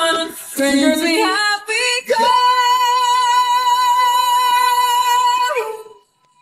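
Unaccompanied female lead vocal singing a few short phrases, then holding one long high note with a light, even vibrato for about three and a half seconds, which slides down and cuts off just before the end.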